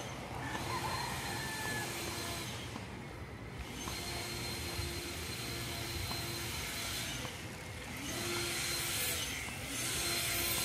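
Outdoor street ambience: a steady hiss with a faint hum underneath. The hiss drops away briefly twice, about three seconds in and near the end.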